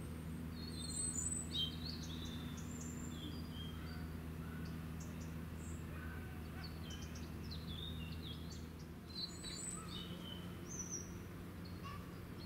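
Small birds chirping and calling in short, high notes, with bursts of calls in the first couple of seconds and again near the end, over a steady low hum.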